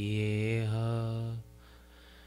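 A man chanting a devotional invocation into a microphone, holding a long steady note on "Swami" that stops about one and a half seconds in. A faint steady hum remains in the pause after it.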